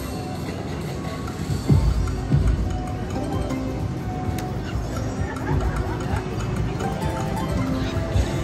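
Ultimate Fire Link Explosion slot machine playing its game music and reel-spin tones as the reels spin and stop, with a couple of low thumps about two seconds in.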